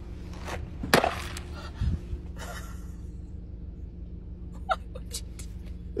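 Steady low hum inside a car, with a few short knocks and rustles of a plastic iced-drink cup being handled and sipped from.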